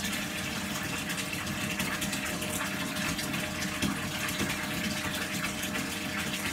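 Steady rushing of running water, unchanging throughout.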